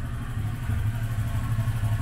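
Honda Click 125 scooter's single-cylinder four-stroke engine idling steadily with a low hum, warming up before a dyno run.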